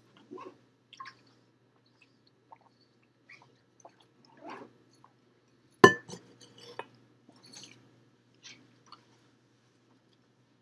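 Scattered small knocks and rustles in a quiet room over a faint steady hum, with one sharp knock about six seconds in.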